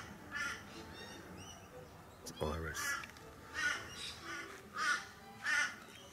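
A crow cawing repeatedly, short calls about once a second.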